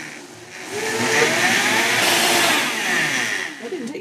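Countertop blender running, blending broccoli sprouts with water and lemon juice. The motor starts low, rises in pitch to full speed about a second in, then winds down near the end.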